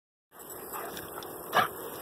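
A Rottweiler barks once, briefly, about a second and a half in, during rough play with another dog.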